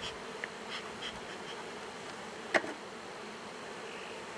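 A crowded colony of honeybees humming steadily over an open hive box. A few faint clicks sound through it, and one sharp click comes about two and a half seconds in.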